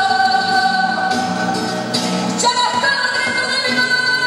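Flamenco song with a sung vocal holding long notes; the voice moves to a new held note about two and a half seconds in.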